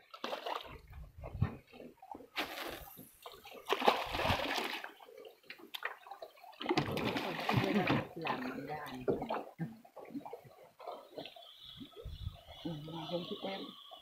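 Water splashing at the surface in a few short bursts, at the end of a fishing line, with low voices in between.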